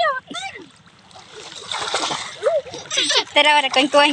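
Water splashing as people play in shallow sea water, with a rush of splashing about halfway through. Voices of people in the water are heard throughout and get loud near the end.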